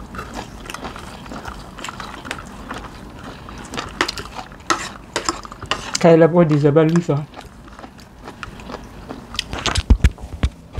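Eating sounds at a meal table: metal spoon and fork clinking and scraping on ceramic plates, with chewing, in a string of short clicks and knocks. A voice speaks briefly about six seconds in.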